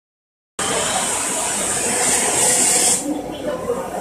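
Steam hissing out of a 500-litre steel pressure cooking vessel, starting about half a second in, loud until about three seconds, then dropping to a softer hiss.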